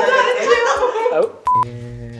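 Laughing talk, then a short, single, steady electronic beep about one and a half seconds in: a bleep sound effect edited into the blooper reel.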